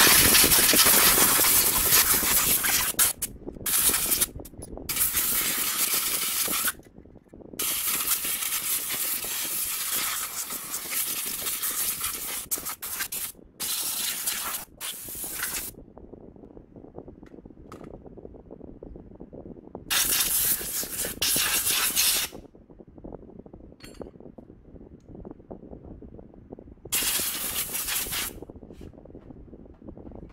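Aerosol cleaner spraying into the CVT housing in repeated hissing bursts. The first bursts are long and run over most of the first fifteen seconds, broken by short pauses, and two shorter bursts follow later.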